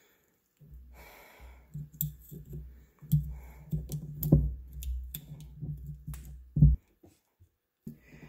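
Circlip spread on snap ring pliers and worked along the splined steel transmission drive axle: scattered small metallic clicks and scrapes over low bumping from the hands and shaft on the bench, with a louder knock near the end.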